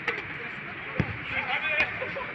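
A football kicked: one dull thump about a second in, with players shouting in the background.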